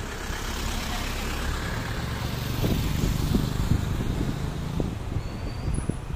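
A road vehicle passing along the road, a broad rumble that swells in the middle and eases off toward the end.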